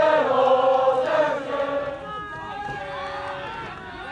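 A team of soccer players shouting a drawn-out chant in unison, a huddle cheer, for about the first two seconds. After that come quieter scattered calls from players.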